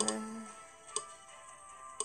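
Faint background music of steady sustained tones, with two sharp clicks about a second apart. A drawn-out hesitant "uh" trails off at the start.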